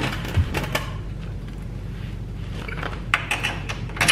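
Scattered light metal clicks and knocks as a steel motorcycle crash bar and its bolts are shifted by hand against the bike's frame to line up the mounting holes, over a steady low hum.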